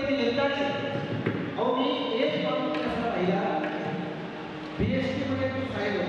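A man's voice over a microphone and PA, speaking in a drawn-out, half-sung delivery with long held notes.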